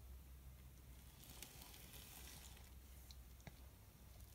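Near silence: low steady room hum with a few faint clicks.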